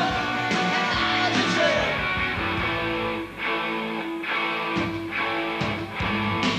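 Live punk rock band playing an instrumental stretch with no singing: electric guitars over bass and drums, a held guitar note in the first second, then a steady repeated note driven by regular drum hits.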